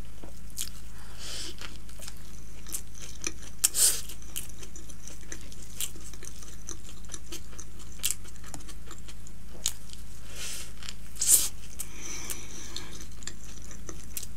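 Close-miked biting and chewing of a burger with lettuce: wet, crisp crunching and smacking, with louder crunches about four seconds in and again near eleven seconds in.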